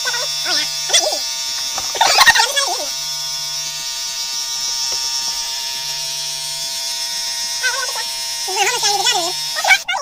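Electric beard clipper running steadily, buzzing against stubble as the beard is shaved off, and switching off near the end. High-pitched, sped-up voices chatter over it a few times.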